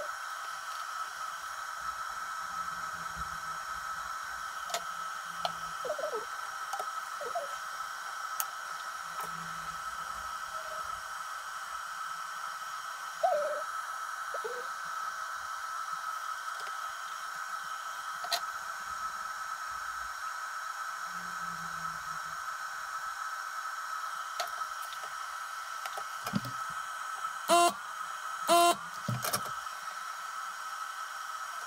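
Steady background hiss with a constant high-pitched whine, under scattered soft clicks and taps from soldering and handling a bare circuit board. There is a sharper knock about 13 seconds in, and two louder clattering knocks near the end as the board is handled.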